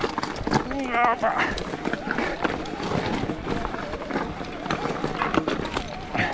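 Electric mountain bike rolling over loose stones on a rocky climb: tyres crunching on rock and the bike rattling with many small irregular knocks. A short wavering voice sound from the rider comes about a second in.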